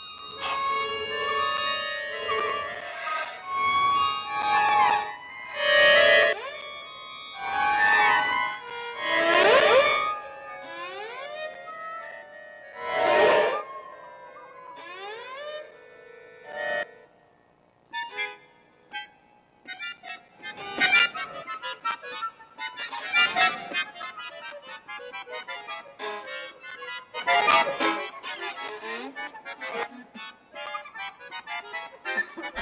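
Contemporary improvised chamber music for violin, button accordion (bayan) and flute: sliding pitches and sudden loud swells in the first half, a brief near-silence just past the middle, then fast, dense short notes to the end.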